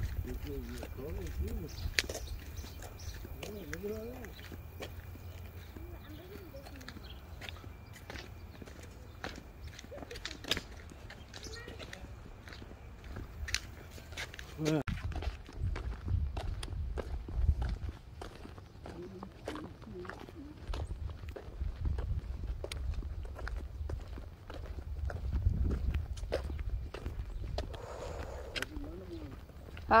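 Footsteps walking along a dirt and concrete path, a steady run of short scuffs and clicks, over a low rumble that swells twice. Faint voices come through now and then.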